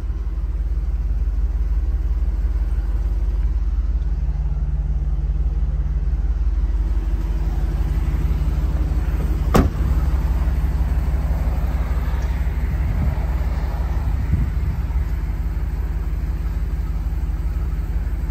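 2010 Jeep Grand Cherokee SRT8's 6.1-litre Hemi V8 idling steadily, with a single sharp knock about halfway through as a door shuts.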